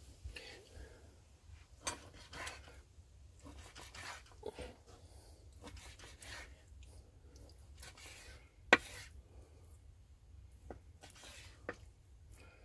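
Kitchen knife slicing through raw marinated pork loin on a bamboo cutting board: soft, scattered cutting sounds and light knocks, with one sharp knock of the blade on the board about two thirds of the way through.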